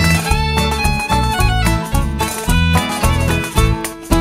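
Folk band playing an instrumental break with no singing: a string melody over strummed strings and a steady beat.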